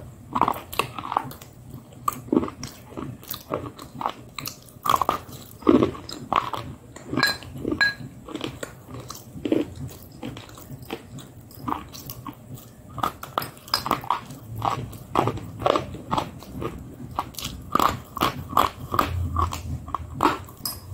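Close-miked biting and chewing of a crunchy white food: a steady run of sharp crunches, several a second, with louder bites about five to six seconds in.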